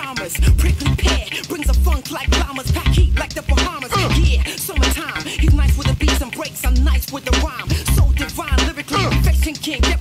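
Hip hop track: rapping over a beat with a heavy, recurring bass kick.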